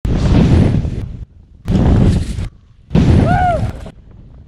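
Intro sound effect for a channel logo: three loud bursts of rushing noise, each about a second long, the third carrying a brief whistle that rises and falls.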